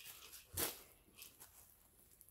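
Quiet handling noise as clothing is reached for and lifted out of its packaging: one short soft rustle about half a second in and a fainter one a little after the middle.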